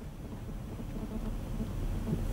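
Low, steady background rumble with faint hiss and no speech: studio room tone during a pause in a live broadcast.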